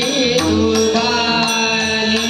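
Warkari bhajan music: male voices holding a long sung note in a devotional chant, with small brass hand cymbals (taal) clashing in a steady beat and a pakhawaj drum underneath.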